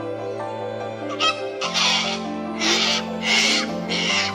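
Sulphur-crested cockatoo screeching: a series of loud, harsh screeches about two thirds of a second apart through the second half, over steady background music.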